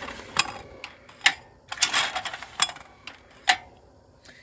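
Atlas AT-150 wobble clay-target trap clicking and knocking as it is repositioned by the wireless remote and throws a clay. There are about six sharp mechanical clicks and knocks, the loudest about a second in and near the end, with a short rush of noise about two seconds in.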